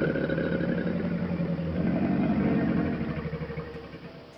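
Caiman grunting: a loud, low, rapidly pulsing rumble that swells about two seconds in and fades toward the end.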